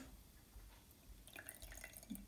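Near silence, then, in the last second or so, a faint trickle of lemon juice poured from a glass juicer into a glass of olive oil.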